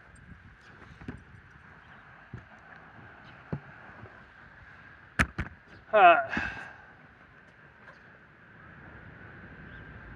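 A few sharp taps or knocks, two in quick succession about five seconds in, then a man's short, loud grunt of 'uh' just after, over a faint steady hiss.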